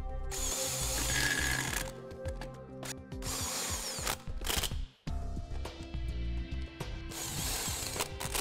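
Cordless Milwaukee M18 impact wrench running the lug nuts onto a trailer wheel in about four bursts, the first the longest at about a second and a half.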